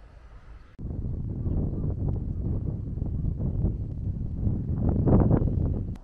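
Wind buffeting the microphone: a loud, gusting low rumble without any pitch, starting abruptly about a second in and dropping away near the end.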